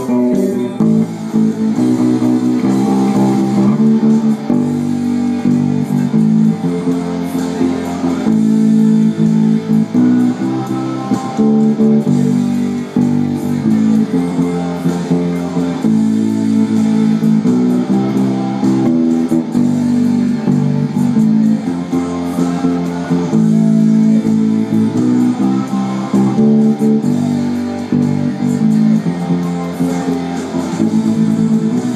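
Electric bass guitar played fingerstyle, a continuous run of low notes, over a full rock band recording with drums and electric guitars.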